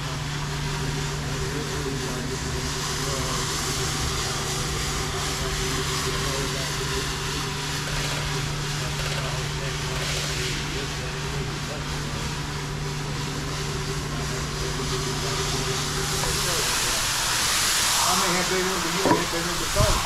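Single-disc rotary floor machine scrubbing a shampoo-foamed wool rug, its motor running with a steady low hum over the hiss of the pad working the wet suds. The hum cuts off about three-quarters of the way through, and a hose spraying water onto the rug takes over with a louder hiss near the end.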